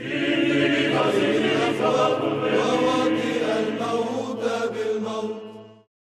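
Choir chanting with held notes over a steady low sustained note, starting abruptly and fading out near the end.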